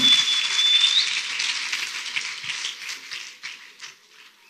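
A congregation applauding, the clapping fading away over about four seconds. A high whistle is held for about a second at the start, rising at its end.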